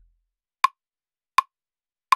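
Software metronome in Ableton Live ticking twice, evenly, about three-quarters of a second apart, as the bass note cuts off right at the start.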